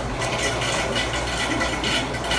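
Close-up chewing and biting on a chicken wing, with short wet mouth clicks, over a steady low hum.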